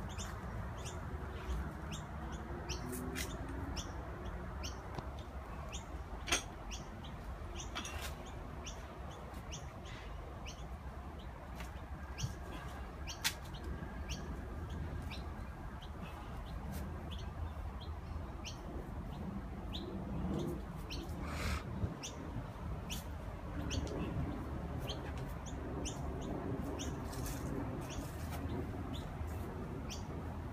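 Small birds chirping in short, high calls, repeated irregularly throughout, over a low steady background rumble, with a few louder sharp clicks.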